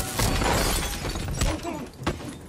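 Film fight sound: a hard impact followed by about a second of smashing and shattering, then another knock and a strained, grunting voice near the end.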